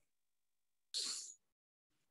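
A person's single short, hissy burst of breath, about a second in and under half a second long.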